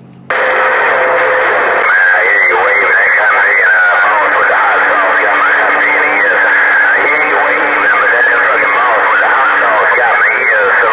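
HR2510 10-metre transceiver on 27.085 MHz receiving a weak, unintelligible voice buried in loud static through its speaker. It cuts in suddenly just after the operator unkeys, and a steady low tone sits under it from about four seconds in until just before the end.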